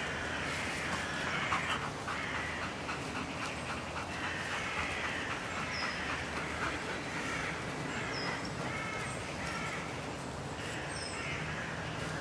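Animal calls in a run of rapid pulses, with short high falling bird chirps a few times.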